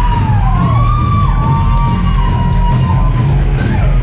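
Live rock band playing loud over a heavy low end, with a held lead line that bends and slides in pitch through the middle, while the drum strokes thin out and pick up again near the end.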